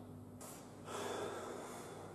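A man breathing out hard for about a second, near the middle, just after a brief rustle. A low steady hum runs underneath.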